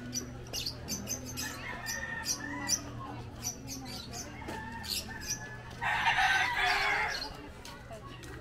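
A rooster crowing once, loud, about six seconds in, among scattered small clicks and knocks.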